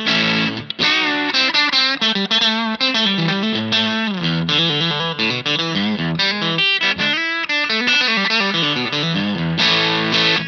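Macmull S Classic Strat-style electric guitar played through a miked Hamstead guitar amp, with quick picked single-note lines mixed with chords and light grit in the tone.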